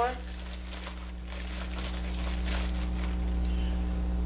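Steady low electrical hum, with faint rustling and a few soft knocks from hands handling things.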